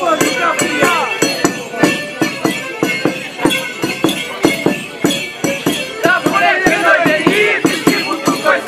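Romanian New Year folk-custom music for a costumed group dance: drum beats about four a second with bells jingling. Voices call out over it, with sliding high calls strongest in the last couple of seconds.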